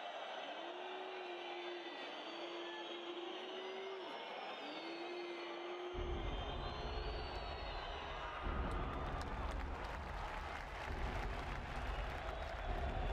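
Cinematic soundtrack sound design: held, slightly wavering tones, then a deep low rumble that comes in suddenly about halfway and swells, with a rapid crackle of clicks over it near the end.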